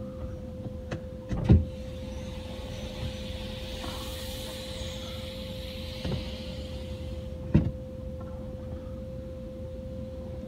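Touchless automatic car wash heard from inside the truck cab during the pre-soak pass: a steady mechanical hum holding one constant tone, with a soft hiss of spray on the rear glass for much of the time. Two dull knocks come about a second and a half in and again near eight seconds.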